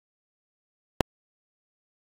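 Dead silence broken once by a single sharp click about a second in.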